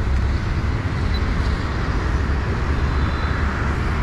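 Steady road traffic noise from a busy multi-lane road: a constant low rumble of passing vehicles, with no single vehicle standing out.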